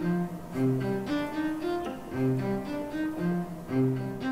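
Background music of low bowed strings, cello-like, playing held notes in a slow repeating figure.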